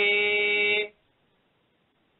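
A man's voice holding the long final note of a chanted Tamil devotional verse, steady in pitch, which stops just under a second in.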